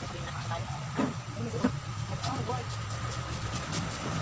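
Steady low mechanical hum, as of a motor running, throughout, with a couple of soft knocks about one and a half seconds apart.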